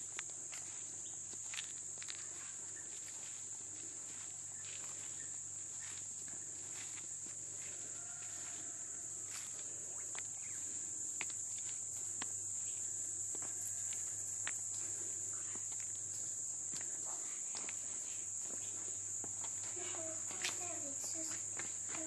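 A steady, high-pitched drone of insects, cicadas or crickets, running without a break, with scattered footsteps on paved paths.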